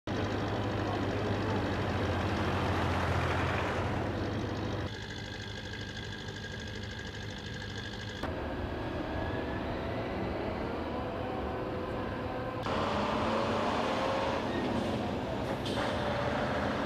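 Natural sound of a container port: a steady mechanical rumble with noise, changing abruptly three times as the background switches.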